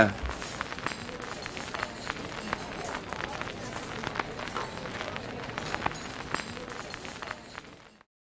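Vinyl record surface noise: a steady crackling hiss with scattered irregular pops and clicks, fading out near the end.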